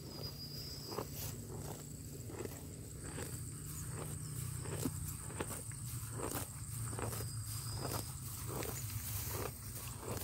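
Cow grazing up close: rhythmic crunching and tearing as it crops and chews grass, about two bites a second.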